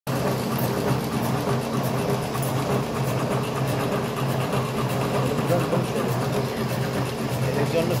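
Electric cigarette filling machine running, its motor humming steadily under a regular mechanical beat as it fills tubes with tobacco and drops finished cigarettes into the tray.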